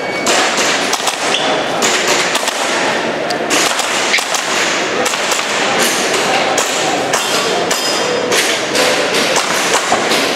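Airsoft pistol firing quick strings of sharp shots, with short gaps as the shooter moves between targets.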